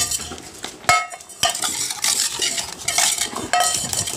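A stainless steel dog bowl knocking and scraping on a tile floor. It rings briefly with each knock, once about a second in and again near the end.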